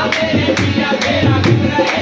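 Qawwali music: singing over sustained pitched accompaniment, driven by a steady beat of sharp percussive strokes about two to three a second.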